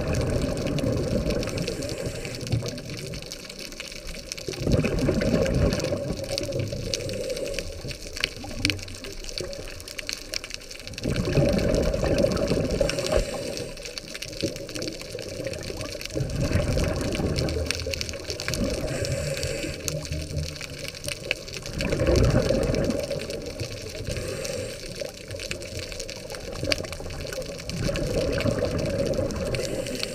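Scuba diver's regulator breathing heard underwater: a muffled rush of exhaled bubbles surges about every five to six seconds, with quieter water noise between the breaths.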